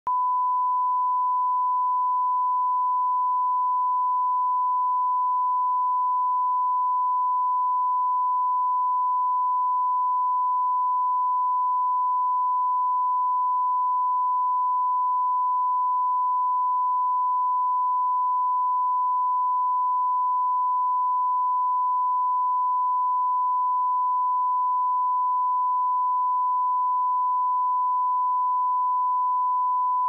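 Steady 1 kHz sine-wave line-up tone played with television colour bars, the reference signal for setting audio levels; it cuts off suddenly at the end.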